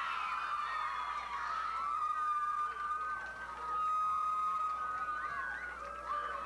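A crowd of teenagers cheering and screaming, many high-pitched held cries overlapping, with one long held shriek in the middle.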